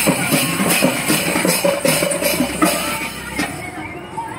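Tappeta frame drums beaten in a quick, steady rhythm with jingling bells, the percussion of a Tappeta Gullu devotional folk song. It gets quieter near the end.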